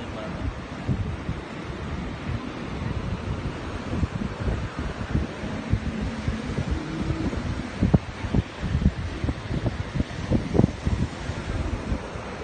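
Strong wind buffeting the phone's microphone in irregular gusts, over the steady wash of breaking surf.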